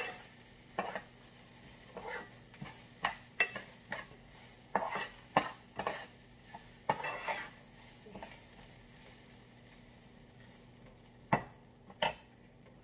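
A spoon stirring and scraping rice that is browning in oil in a frying pan, giving irregular clinks and scrapes over a faint sizzle. The strokes thin out after about eight seconds, and one sharp knock comes near the end.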